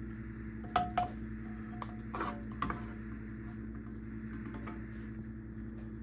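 A serving utensil clinking and scraping against cookware while meat sauce is spooned and spread over the lasagna layers. Two sharp clinks come about a second in, then softer scrapes, over a steady low hum.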